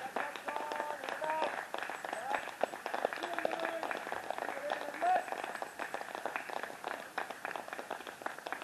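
Indistinct voices of people talking and calling at a distance, with no clear words, over a scatter of small clicks.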